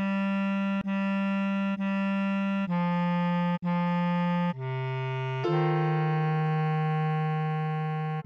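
Bass clarinet tone playing a slow melody line, one note at a time, each note about a second long with a short break between. It plays three repeated notes, two a step lower, then a lower note, and from about five and a half seconds in one long held note.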